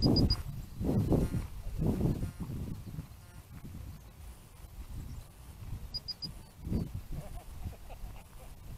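Wind buffeting a rocket-mounted camera's microphone in uneven gusts. Over it, three quick high beeps sound twice, about six seconds apart: the repeating status beeps of the rocket's dual-deploy flight altimeter, armed and waiting on the pad.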